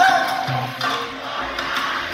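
Live salsa band playing with percussion, a sung line from the lead singer trailing off about half a second in.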